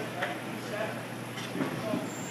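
Faint background voices in an indoor batting cage, with a couple of light knocks.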